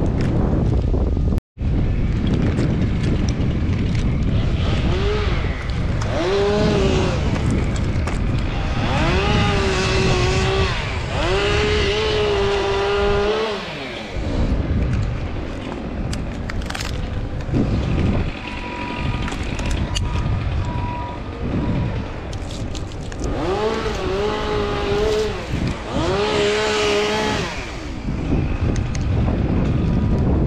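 Chainsaw revving up, held at high revs and dropping back in several bursts of one to three seconds, a cluster in the first half and two more about three-quarters of the way through. Wind rumbles on the microphone throughout, and the sound cuts out for an instant about a second and a half in.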